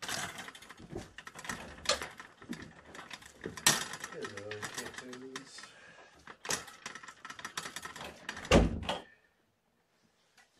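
Kittens playing with hard toys: a rapid, uneven clatter of clicks and rattles, as of a ball batted round a plastic track toy, with a short pitched call or voice about four seconds in and a heavy thump near the end.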